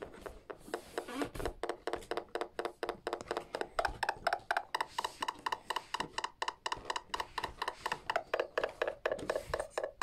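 A littleBits electronic synth circuit plays a looping sequence of short, buzzy electronic notes, about four or five a second, through its small speaker. The pitches of the loop shift as the knobs on the four-step sequencer bit are turned.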